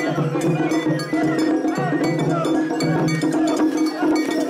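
Crowd of mikoshi bearers chanting in a steady rhythm while carrying the portable shrine, with metallic clinking running through it.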